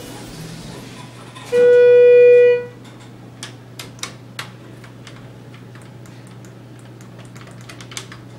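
A Schindler elevator car's electronic beep: one steady mid-pitched tone lasting about a second, starting about a second and a half in. After it come a few sharp clicks of buttons being pressed on the car's panel.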